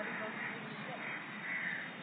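Crows cawing repeatedly, several harsh caws about half a second apart.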